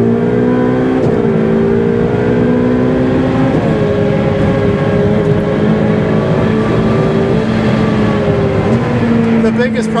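Ferrari 488 Pista's twin-turbo V8 running hard at speed, heard on board. The engine note climbs gently, steps down in pitch about three and a half seconds in and picks up again near the end.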